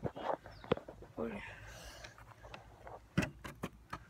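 Mostly quiet, with a few short knocks or clicks and brief faint voices; one short word is spoken near the end.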